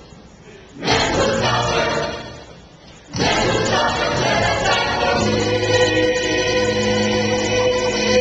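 Mixed adult choir singing a gospel song: a phrase that fades out, a brief pause, then singing that settles into a long held chord from about five seconds in.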